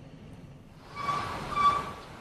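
Street traffic noise from the reporter's outdoor microphone fades in about a second in: a steady hiss with a high tone sounding twice.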